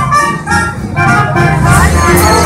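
Live band music playing loudly at a street festival, with held melody notes over a steady low bass.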